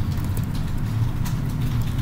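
Steady low hum and hiss of the room and microphone, with a few faint keyboard key clicks as a short word is typed.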